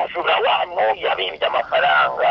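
Speech only: a man talking quickly into a handheld microphone.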